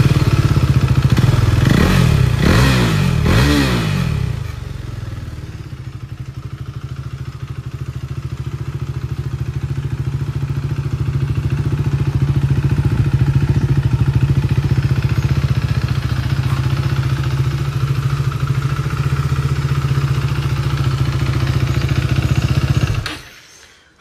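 KTM Duke 390's single-cylinder engine, running through an aftermarket exhaust, is revved in several quick blips, then settles to a steady idle. It is switched off near the end and cuts out suddenly.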